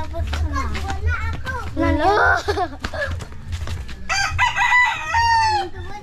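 Rooster crowing: one long cock-a-doodle-doo that starts about two-thirds of the way in, holds and then falls away.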